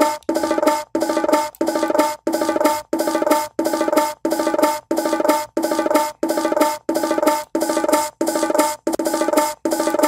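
A bongo sound separated out of a sampled drum loop, playing as a short loop that repeats about three times every two seconds. Each repeat rings with a clear pitch and then cuts off sharply, gated, before the next.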